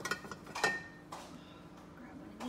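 Metal kitchen utensils clattering, with a louder clink about half a second in that rings briefly, then a few faint ticks, over a low steady hum.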